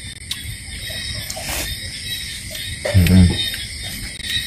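Night insects singing steadily in the background, with a brief grunt or short word from a man about three seconds in.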